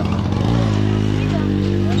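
Motorcycle engine running close by at a steady pitch, coming in about half a second in.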